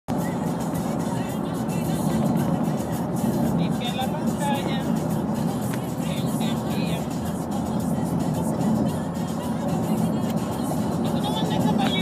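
Steady road and engine noise of a car cruising at highway speed, heard inside the cabin, with faint voices and music underneath.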